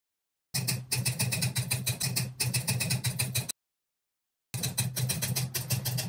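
Typing sound effect with the text animation: rapid, even key clicks, about nine a second, in two runs of about three and two seconds separated by a second of silence, each starting and stopping abruptly.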